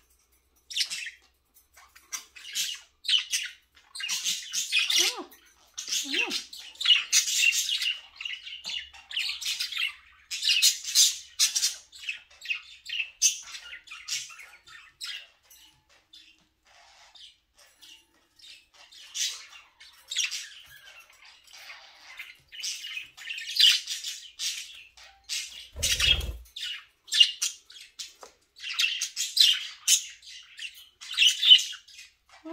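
Several budgerigars chattering and chirping, with sharp squawks coming in bursts; the calls thin out for a few seconds in the middle. A single dull thump near the end.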